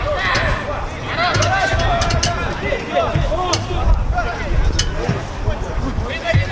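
Players' voices calling out on the pitch during a football match, with a few sharp knocks.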